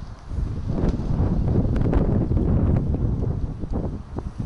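Wind buffeting the camera's microphone: a low, noisy rumble that swells about half a second in and eases near the end.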